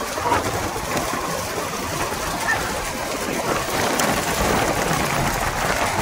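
Steady rushing road noise of a bullock cart race, recorded from a vehicle moving alongside the carts: wind and road noise with no single clear source standing out.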